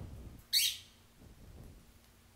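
Peach-faced lovebird giving one short, sharp, high-pitched shriek about half a second in.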